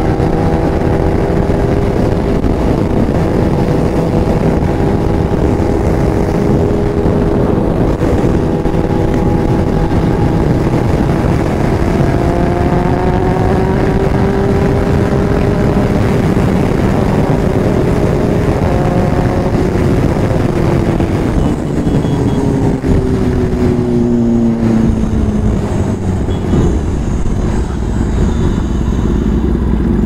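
Kawasaki Ninja ZX-10R's inline-four engine running hard at expressway speed, with heavy wind rush over the helmet microphone. The engine note climbs slightly midway, then falls steadily over the last several seconds as the rider rolls off the throttle.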